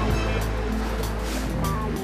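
Background music with a sustained deep bass note and held notes shifting above it.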